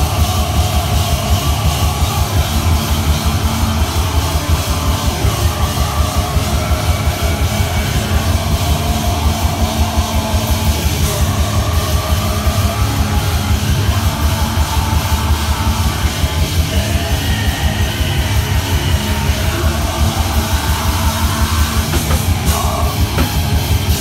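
A heavy metal band playing live and loud: distorted electric guitars over a fast, pounding drum kit, with no break in the playing.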